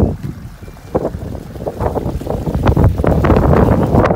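Gusty storm wind buffeting the microphone in a rough, low rumble, rising sharply about a second in.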